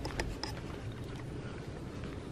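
Low rumble of a handheld camera being carried and moved, with a few soft clicks in the first half second.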